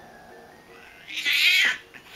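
A domestic cat gives one harsh, screechy yowl about a second in, lasting just over half a second and dropping in pitch at the end: a defensive, threatened cry. Quiet background music plays underneath.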